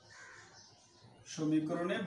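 Faint scratching of a marker writing on a whiteboard, then a man's voice starting a little past halfway with a drawn-out syllable that is the loudest sound.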